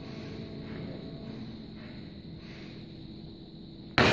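Quiet room tone: steady low background noise with a faint hum, and no distinct event.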